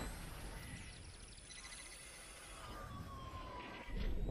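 Synthesized sound effect for an animated logo: an electronic whoosh with a hiss and thin gliding tones, one tone sliding slowly down in pitch near the end.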